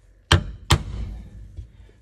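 Center punch struck against the Sprinter van's sheet-steel body: two sharp metallic strikes less than half a second apart, marking the drill points.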